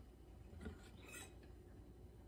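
Near silence, with a couple of faint, short clinks and rubs from a metal spoon against a ceramic coffee mug, about half a second and a second in.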